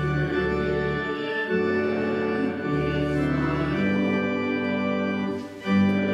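Church organ playing a slow hymn in sustained chords that change every second or so, with a brief break about five and a half seconds in before the next chord.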